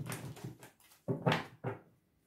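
A deck of tarot cards being shuffled by hand: three short rustling swishes, one at the start and two more after about a second.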